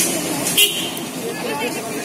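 Background voices talking over a steady hum of street noise, with one short sharp clink just over half a second in.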